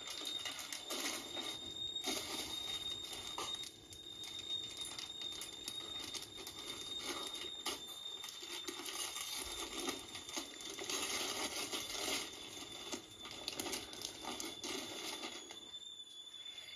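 Rustling, crinkling and small clicks of gifts being handled and unwrapped by hand, over a steady high-pitched whine.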